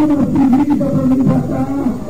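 A loud, distorted human voice, its pitch held on each syllable and sliding between them.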